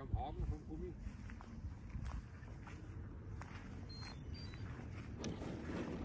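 Low wind rumble on the microphone with faint scattered ticks, and a brief voice in the first second.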